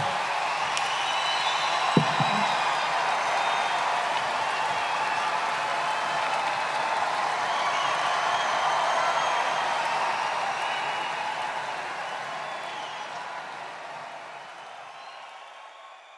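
Large concert audience applauding and cheering, with whistles above the clapping and a single thump about two seconds in. The sound fades out steadily over the last several seconds.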